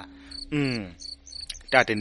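Crickets chirping in short, high, repeated chirps during a pause in a man's narration, with one falling "hmm" from him about half a second in and his talk starting again near the end.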